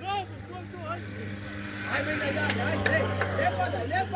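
Several voices shouting and calling out across an open pitch, more of them at once and louder from about halfway through, over a steady low hum.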